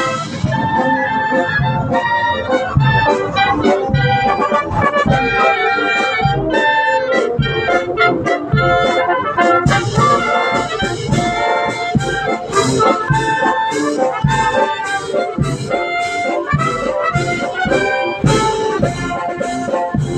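Marching brass band playing a tune: trumpets, clarinets and sousaphones over a steady drum beat, with the percussion growing brighter about halfway through.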